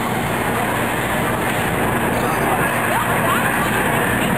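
Outdoor crowd ambience: a steady wash of many people talking at once, with a couple of brief rising tones about three seconds in.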